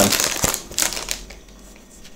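Foil wrapper of a Pokémon Fates Collide booster pack crinkling and crackling in the hands as it is opened, dying away after about a second.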